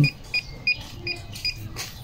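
A run of short, high electronic beeps, about five at uneven spacing, from electronics being worked during a diagnostic scan-tool check on a motorcycle.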